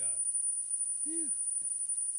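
Speech only: a man's voice finishing a word, then a brief "yeah" about a second in, over a faint steady hum.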